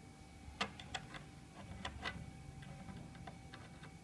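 Several light, irregular clicks and taps of a USB plug being handled and pushed into the USB-B socket of an Arduino Mega board.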